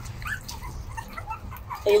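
Very young puppies whimpering in short, quiet squeaks, over a low steady hum.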